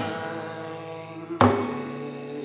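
Acoustic guitar being strummed. A chord rings out and fades, then a new chord is strummed about one and a half seconds in and rings.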